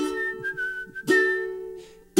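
Background music: a strummed string instrument with a whistled melody. Two chords are struck about a second apart and left to ring while the whistled tune holds a few notes, and it fades out near the end.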